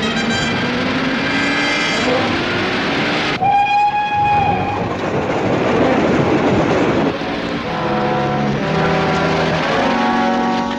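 Dramatic music score over a steady, loud rumbling noise. About three and a half seconds in comes a single held horn-like tone, about a second long.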